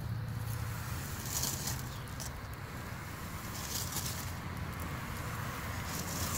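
Faint scrubbing of a sponge rubbed lightly back and forth over a flour-dusted flat headstone, in several soft, irregular strokes, over a low steady rumble.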